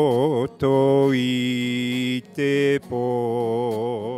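An elderly man singing a Māori song into a microphone in long held notes with a wide vibrato, in four phrases broken by short breaths, over guitar accompaniment.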